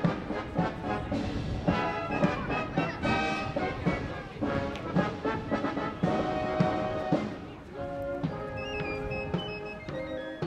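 Military brass band playing a march, with a steady drum beat about twice a second under the brass.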